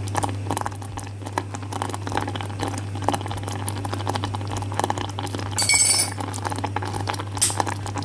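Scattered light clinks and taps of spoons against a metal saucepan while jam is stirred and tasted, with a brighter clatter about six seconds in, over a steady low hum.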